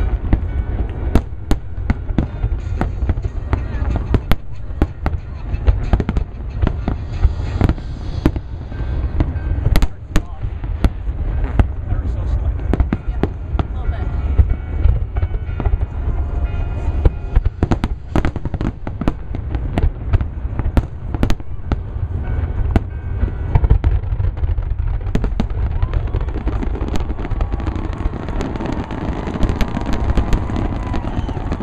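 Large aerial fireworks display: a dense, rapid string of shell bursts, sharp bangs coming several a second over a continuous low rumble.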